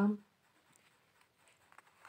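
A voice trails off at the start. Then come faint rustles and light clicks of a deck of playing-card-sized Lenormand cards being handled in the hand, a little busier near the end.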